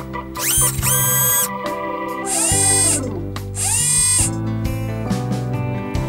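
Background music, crossed by four loud rising whines that climb steeply in pitch and then hold, about a second apart.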